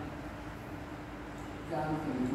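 A pause in a sermon: steady low room noise with no voice, then the preacher's speech resumes near the end.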